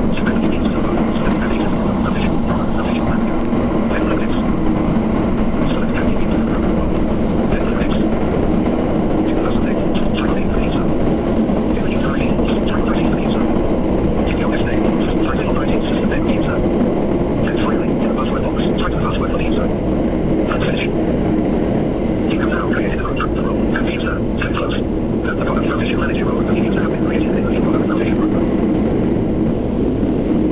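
Train running at speed, heard from inside the passenger car: a steady loud rumble of wheels on rail with a running hum and irregular rattling and clicking over it.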